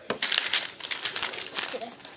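A sheet of paper rustling and flapping close to the microphone, a rapid irregular crackle.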